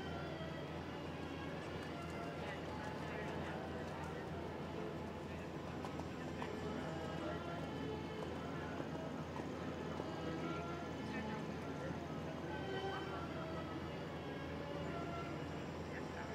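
Soft hoofbeats of a German riding pony moving over sand arena footing, heard faintly under a background of distant voices and music.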